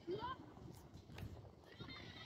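Shouts of young footballers across the pitch, with a loud short rising call right at the start. A couple of sharp knocks follow about a second in.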